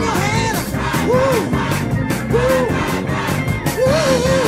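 Live gospel music: a band playing a fast, steady beat while a singer's voice rises and falls in long, arching calls over it, with congregation crowd noise mixed in.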